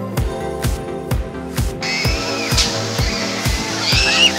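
Background music with a steady beat, about two hits a second. From about two seconds in, a hiss of higher-pitched noise with a few shrill gliding tones rises under it.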